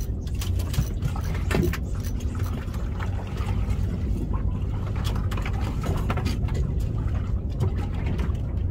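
Steady low rumble aboard a small fishing boat at sea, with water noise and irregular clicks and knocks scattered through it.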